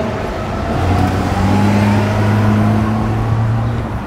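A motor vehicle's engine running close by with a steady low hum. It grows louder about a second in and eases off near the end.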